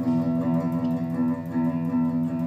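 Electric guitar playing a steady run of even, alternate-picked notes on a single string, all at one pitch. It is an exercise in picking continuously in groups of four with a relaxed pick.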